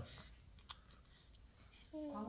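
Near silence with room hiss and one short, faint click about a third of the way in.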